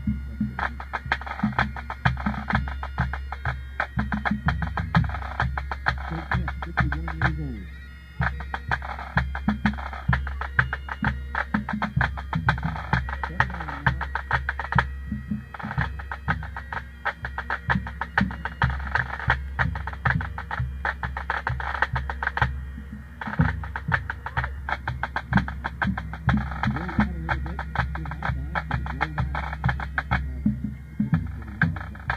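Pipe band drum corps playing a drum salute: snare drums in rapid rolls and rudiments over tenor drums and a bass drum, with short breaks between phrases.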